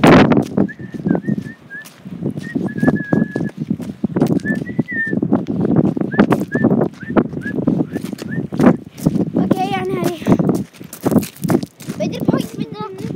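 Walking on a gravel track: footsteps and handling noise, while short high chirping notes repeat over and over. About ten seconds in, a wavering drawn-out call is heard.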